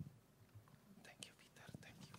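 Near silence: room tone with a few faint short clicks and soft rustles in the second half.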